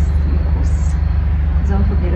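A woman's voice, speaking only in fragments, over a loud, steady low hum.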